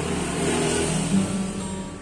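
Nylon-string classical guitar fingerpicked in a short instrumental gap between sung lines, with low notes ringing under a wash of background hiss.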